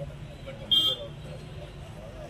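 A short, high-pitched vehicle horn toot about three-quarters of a second in, over a steady low street hum and scattered voices.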